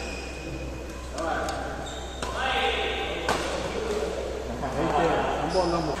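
Doubles badminton rally in a large indoor hall: several sharp racquet strikes on the shuttlecock, with players' voices calling out between shots, all echoing off the hall's walls.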